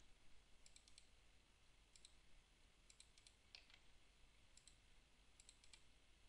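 Near silence with faint computer mouse clicks, coming in small groups of two or three scattered through the stretch.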